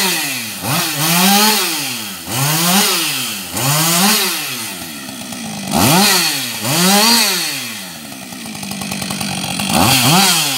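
Husqvarna 562 XP two-stroke chainsaw revving up and down over and over, about once every second and a half. Near the end it drops to a steady idle for a second or two, then revs up again.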